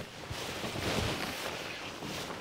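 Thin plastic bag rustling as hands rummage through it: a soft, even rustle without distinct clicks or knocks.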